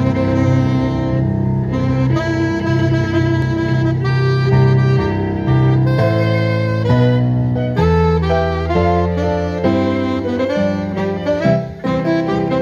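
Saxophone leading a wedding march with a violin, over low held bass notes; the notes are sustained and change in steps.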